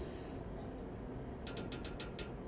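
A quiet pause with faint background noise, then, in the last half second, a quick run of about six sharp clicks, roughly seven a second, like a ratchet.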